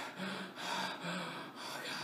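A man's breathy, gasping vocal sounds in about four short bursts.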